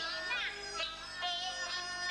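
Teochew opera singing: a single voice in long, sliding, ornamented notes over instrumental accompaniment.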